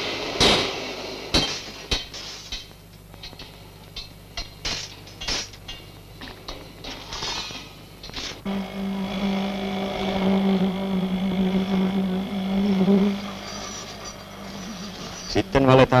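Construction-site work on steel reinforcement: irregular metallic clinks and knocks, then about halfway through a steady low machine hum that runs for about five seconds and fades.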